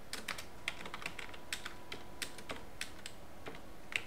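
Typing on a computer keyboard: irregular, separate keystroke clicks as a line of code is entered.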